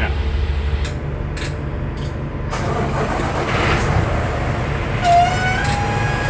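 Diesel engine running steadily, with a few sharp knocks in the first two seconds and a broad hiss joining from about two and a half seconds in.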